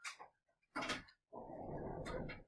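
Sheets of paper rustling and sliding as worksheets are handed out, in short irregular bursts, the longest lasting about a second near the end.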